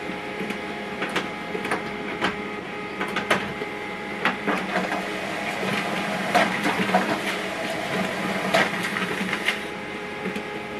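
HP LaserJet Pro M148dw laser printer printing a page: a steady mechanical whir with many short clicks and ticks from the paper feed. The printed sheet is fed out onto the output tray near the end.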